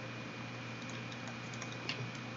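Faint, scattered ticks of a stylus tapping on a tablet screen as digits are written, over a steady background hiss.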